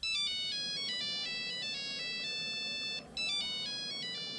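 Mobile phone ringtone: a short electronic melody of high notes stepping up and down. It breaks off briefly about three seconds in and starts over, signalling an incoming call.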